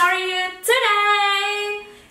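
A woman singing unaccompanied: a short held note, a brief break, then a longer, slightly higher sustained note that fades away near the end.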